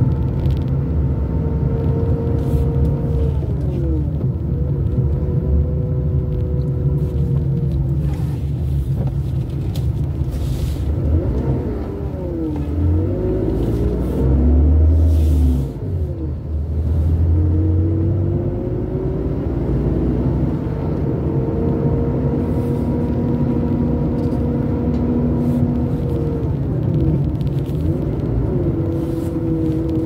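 A car driving slowly through town: engine and road rumble, the engine note rising and falling as it slows and picks up speed, with a deeper, louder rumble about halfway through.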